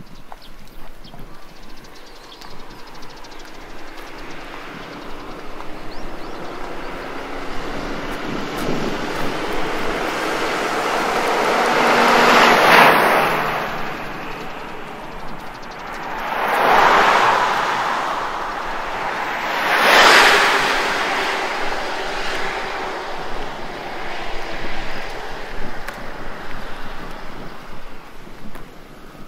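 Road traffic passing close by: three vehicles go by in turn, their tyre and engine noise rising and fading away, the loudest about halfway through.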